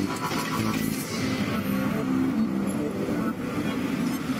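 Television news opening theme: music mixed with the sound of car traffic.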